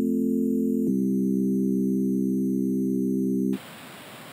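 8-bit chiptune music ending on long held synth chords: the chord changes about a second in and is held until it cuts off near the end. A quieter steady hiss follows.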